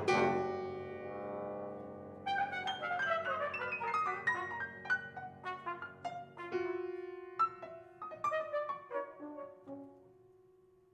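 Brass ensemble of trumpets, French horns, trombone and tuba with piano playing: a loud chord at the start dies away, then quick short notes come in about two seconds in. In the second half a held note sounds under scattered short notes, fading near the end.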